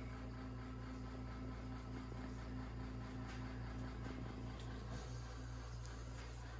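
Room tone: a steady low electrical hum, with a couple of faint soft clicks from fabric being handled near the middle.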